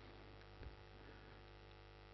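Near silence with a faint, steady electrical mains hum from the microphone and sound system.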